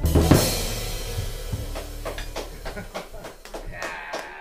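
Jazz quintet's final hit on piano, trumpet, alto saxophone, bass and drums, with a cymbal and drum crash right at the start that rings out and fades. Scattered short sharp hits follow as it dies away.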